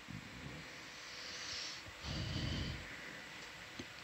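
A person's breath on a close microphone: two audible breaths, each about a second long, the second one lower and fuller.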